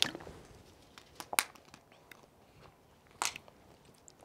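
Thin Bible pages being turned by hand: a few short, crisp page flicks and rustles, the sharpest about a second and a half in and another just past three seconds.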